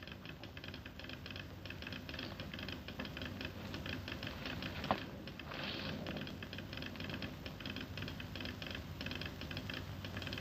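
Telegraph sounder clicking out Morse code in rapid, irregular runs of small clicks, with one sharper click about five seconds in.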